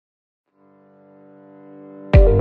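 Intro music: a sustained low electronic tone fades in from silence about half a second in and swells steadily, leading into electronic music.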